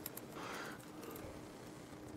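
Faint clicks of a laptop keyboard as a command is typed, over a low steady hum.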